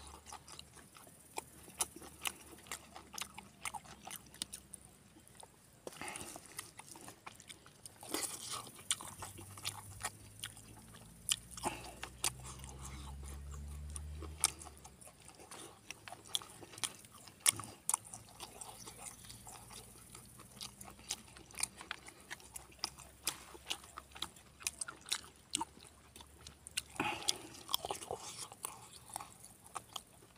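Close-up eating sounds of a man chewing a mouthful of rice and pork belly curry eaten by hand, with many short wet clicks of the mouth. A faint low drone swells and fades in the middle.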